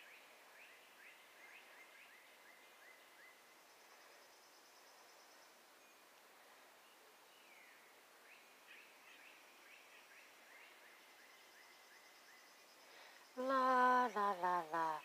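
Faint outdoor ambience with a series of quick, repeated high bird chirps, coming in two runs. Just before the end, a louder person's voice starts, stepping down in pitch.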